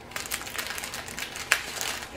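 Small clear plastic bags of diamond-painting drills crinkling and rustling as they are handled, with a sharper crackle about one and a half seconds in.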